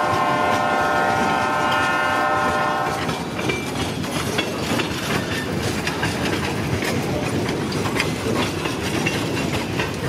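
Freight cars rolling past with a steady rumble and scattered wheel clicks on the rail, while the locomotive's horn sounds a held multi-note chord that cuts off about three seconds in.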